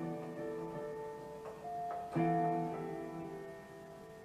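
Piano chords played slowly with no singing: a chord rings on, a few single notes follow, and a fresh chord is struck about two seconds in and fades away.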